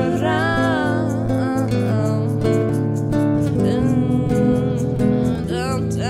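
Strummed acoustic guitar with women's voices singing a melody, over a steady ganzá shaker rhythm.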